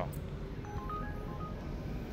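A smartphone delivery app (Uber Eats courier app) sounding its incoming-order alert: a handful of short, quiet electronic beeps at a few different pitches, over a low hum of street background noise.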